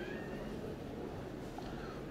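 Low background noise of a large exhibition hall during a pause in speech, with a faint, brief rising high-pitched sound right at the start.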